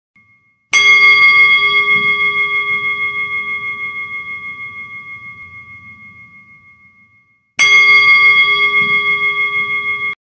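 A bell struck twice, each strike ringing on as a steady, pulsing metallic tone. The first, about a second in, fades slowly over some six seconds. The second, near the end, is cut off suddenly while still ringing.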